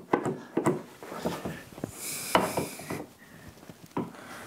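Plastic top-box mounting plate being shifted on a motorcycle's rear carrier to line up its bolt holes: a few sharp clacks in the first second, a scraping rub around the middle, and a knock at the end as it is pressed down.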